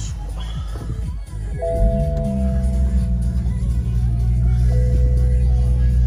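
A BMW M140i's 3.0-litre turbocharged straight-six starting a little under two seconds in and settling into a steady idle, heard from inside the cabin. A steady two-note electronic chime sounds over it as it starts.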